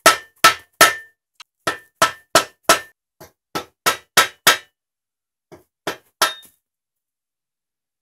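Hammer blows on the end of a wooden pole, driving an old steel outer bearing race out of an exercise bike's frame: about three sharp knocks a second with a short metallic ring, a brief pause, then a few more before they stop about six and a half seconds in.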